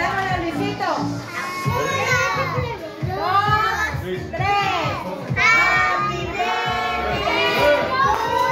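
A group of voices, children among them, singing a birthday song together, several voices overlapping throughout.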